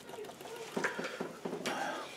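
Paintbrush dabbing and dragging oil paint on a gessoed MDF board: a handful of short, quick strokes, most of them in the second half.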